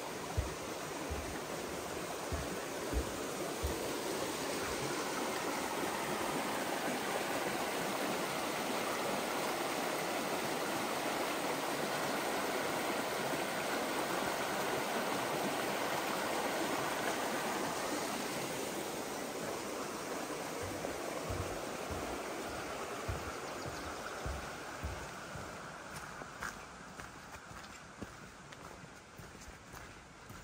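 Small mountain creek running over rocks, a steady rush that swells in the middle and fades away over the last third. Low thuds of footsteps fall in the first few seconds and again later.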